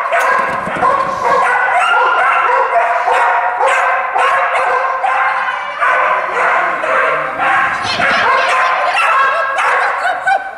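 A dog barking almost without pause, several barks a second, as it runs an agility course, with a person's voice calling over it.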